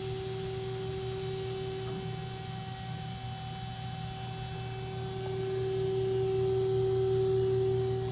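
Cart lift of a Kramer Grebe bowl cutter running, a steady machine hum with a single steady whine, growing a little louder past the middle as the lift arm lowers.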